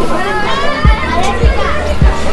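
Crowd of people talking at once, children's voices among them, over background music with a low beat.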